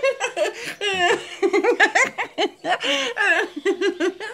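A high-pitched cartoon character voice for a parrot puppet laughing in a long run of quick, repeated "ha-ha" bursts, with brief pauses for breath.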